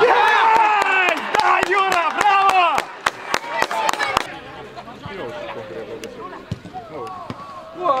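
Loud shouting from men's voices for about the first three seconds, with many sharp clicks among them up to about four seconds in; after that the voices are quieter.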